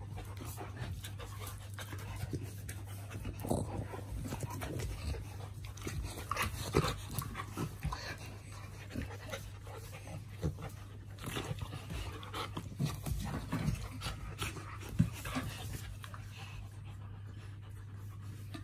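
A St Bernard and a chow chow wrestling: dogs panting and scuffling, with irregular short sharp noises from the tussle, the loudest about a third of the way in, past the middle and near the end.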